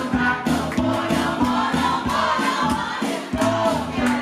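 Live band music: a steady drum beat over a bass line, with melodic lines on top.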